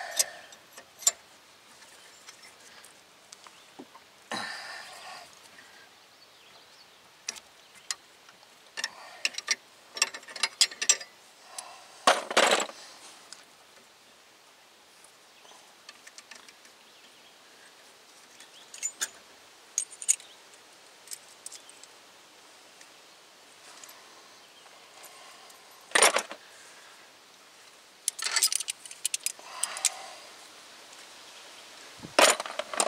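Metal clinks, clicks and clatter of a double-flaring tool and locking pliers being worked on the end of a brake line and then taken off, in scattered bursts with quiet gaps between; the loudest knocks come about twelve seconds in and again near the end.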